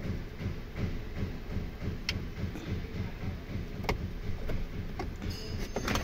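Plastic dashboard parts rattling and knocking, with a couple of sharp clicks and a brief squeak near the end, as the A/C control panel, snagged on its wiring, is worked loose from the dash.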